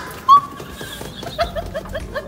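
A woman's short, high-pitched squeal, then a quick run of high-pitched giggling laughter that starts about halfway through.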